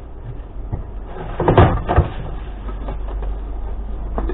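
Plastic crate and scrap clattering as they are lifted and handled, with two sharp knocks about a second and a half and two seconds in, over a steady low rumble.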